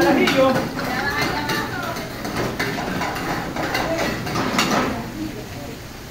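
Metal spoon clinking and scraping against a frying pan on a commercial gas stove, in a few short clicks, under background kitchen voices.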